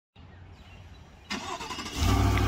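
A vehicle engine rumbling low, then growing louder and fuller about a second in.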